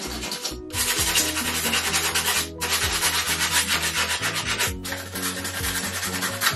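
Hand sanding of the claw foot tub's chipped finish with 80-grit sandpaper: a steady scratchy rubbing in long strokes, with two short pauses. This is surface prep of chipped and cracked spots before they are filled.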